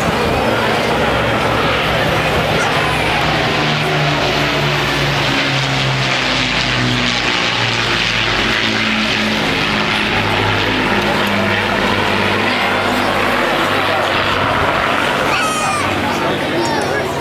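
Avro Lancaster bomber flying past with its four Rolls-Royce Merlin piston engines and propellers droning loudly and steadily. The engine note drops in pitch about halfway through as the aircraft passes and moves away.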